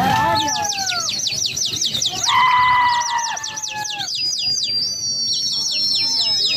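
Pigeon fanciers whistling shrilly at their flying flock, in fast warbling runs of downward swoops several times a second, mixed with long drawn-out calls. Near the end one whistle is held as a long, slowly falling note.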